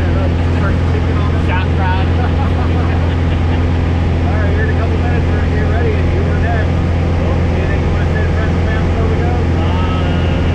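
Steady drone of a small jump plane's engine and propeller heard inside the cabin during the climb, with muffled voices talking under it.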